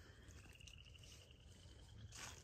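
Near silence, with a faint, rapid, evenly pulsed high-pitched trill from a distant animal.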